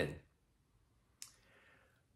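A single sharp click about a second in, with a faint short hiss trailing it, in a lull between a man's sentences.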